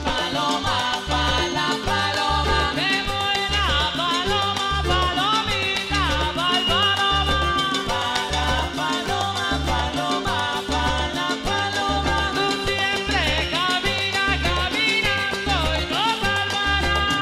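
Live cumbia band playing an instrumental passage, with a steady repeating bass line under melodic lead lines.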